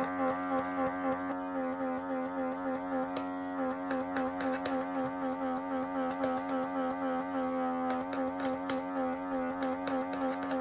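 Handheld diamond-tip microdermabrasion suction wand running against the skin: a steady buzzing hum whose level rises and falls about twice a second.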